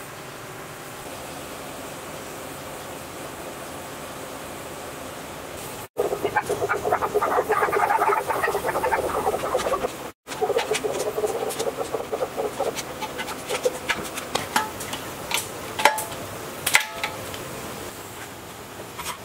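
A faint steady hiss, then a ratchet wrench clicking rapidly as it tightens a fitting on a steel gas cylinder, in a dense stretch starting about six seconds in and carrying on more sparsely after a break near ten seconds. Near the end come a few separate sharp metal clicks.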